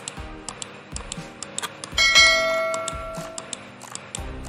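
A bell-like notification chime rings once about halfway through and fades away over a second or so, over background music with a light ticking beat about twice a second.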